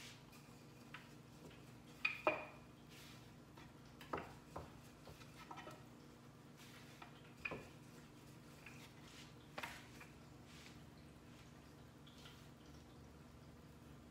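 Wooden rolling pin rolling out chapati dough on a wooden chopping board, giving a few scattered knocks, the loudest about two seconds in, over a faint steady hum.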